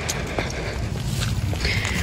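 Footsteps of a person walking on a street pavement: a few faint taps over a steady low outdoor rumble.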